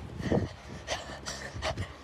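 A person breathing hard in several short breaths, mixed with the rustle of the phone rubbing against a shirt as it is jostled.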